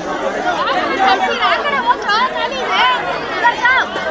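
Crowd chatter: many voices talking over one another.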